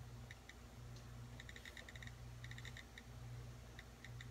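iPod touch date-picker wheel ticking as it is scrolled through the days, faint clicks coming singly and in quick runs of several.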